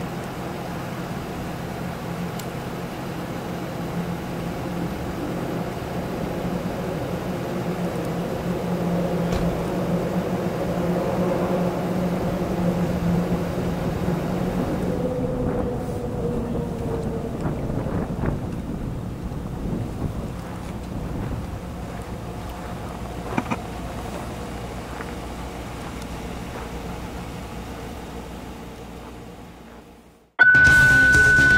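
Idling emergency vehicle engine, a steady low hum. About halfway through it gives way to quieter outdoor background with a few faint knocks, and the sound fades out near the end.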